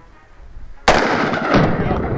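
A single .357 Magnum revolver shot: a sharp crack about a second in, followed by a long rumbling echo.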